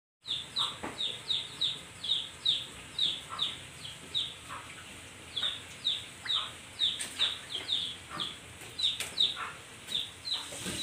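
A bird chirping repeatedly: short, high chirps that fall in pitch, about two or three a second, with a couple of faint clicks.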